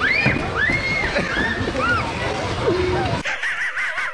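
High-pitched squealing, whimpering vocal sounds from a young child. About three seconds in, it cuts abruptly to the wheezing, snickering laugh of the cartoon dog Muttley: a quick run of short rising-and-falling notes.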